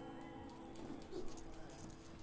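Quiet pause with a faint steady hum from the band's sound system, and faint high chirps in the second half.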